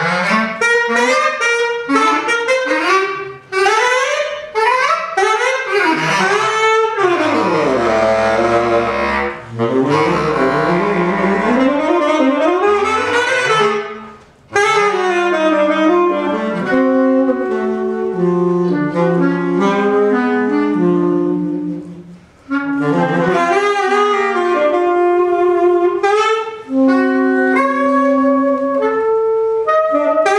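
A saxophone and a bass clarinet playing a jazz duet, two melodic lines weaving around each other with brief breaks between phrases. Near the middle, a line runs down into long low notes.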